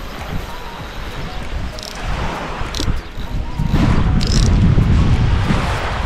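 Wind blowing over the microphone on an open beach, with surf behind it, swelling into a strong low gust about four seconds in.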